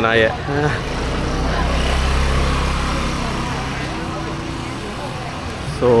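Road-vehicle noise: a steady low rumble that swells and then slowly fades.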